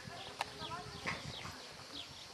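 Hoofbeats of a horse cantering on arena sand, with birds chirping and a single sharp click a little under half a second in.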